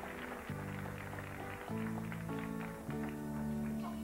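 Piano introduction to a slow ballad: held chords that change about every second.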